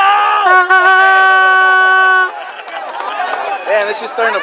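A spectator's long, loud shout that slides down in pitch at the start and is then held on one steady note for about two seconds before cutting off, over crowd chatter.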